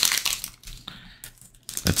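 Foil trading-card pack wrapper crinkling and crackling in the fingers as it is torn open: loudest in the first half second, then a few scattered faint crackles.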